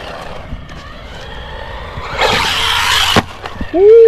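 Brushless 1/16 RC car running fast on asphalt: a loud rush of motor and tyre noise for about a second, cut off by a sharp knock as it hits the jump. A man's "Ooh" starts near the end.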